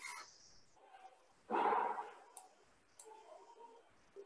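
A single short dog bark about one and a half seconds in, the loudest sound here, with a few faint clicks around it.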